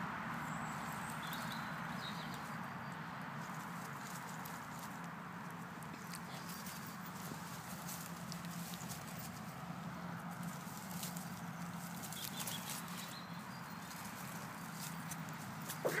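Yorkshire Terrier puppy tugging and chewing a dry twig in the grass: scattered light cracks and rustles of the twig over a steady low background hum.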